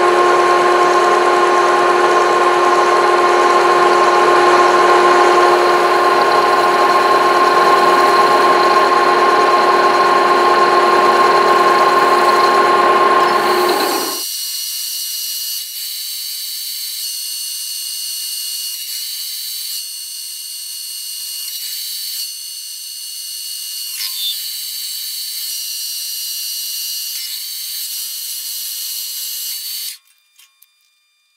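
Metal lathe turning an annealed steel bearing roller with a toolpost cutter: a loud, steady machine whine with cutting noise. About halfway through, the sound changes abruptly to a thinner, high-pitched whine, a little quieter, as the cut goes on with curly chips coming off the part.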